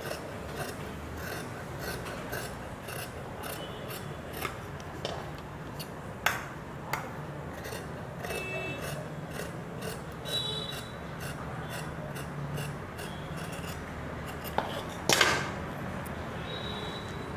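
Scissors cutting through coat fabric along a curve: a steady run of short snips, roughly two or three a second, with the cloth rubbing on the table. Near the end a brief, louder rustle as the cut panel is handled and smoothed flat.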